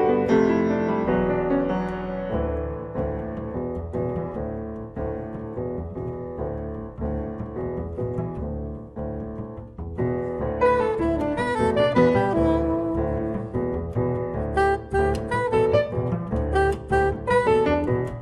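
Live jazz: Steinway grand piano with upright bass, joined about ten seconds in by a soprano saxophone playing the melody.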